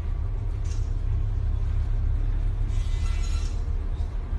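Steady low rumble on board a tanker ploughing through storm waves, with a faint hiss of wind and sea above it.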